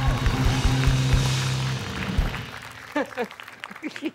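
Band theme music with a drum beat and bass guitar, stopping about two seconds in; short bursts of voices follow near the end.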